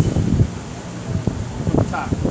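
Wind rumbling on the microphone, with a low, uneven outdoor background and faint voices.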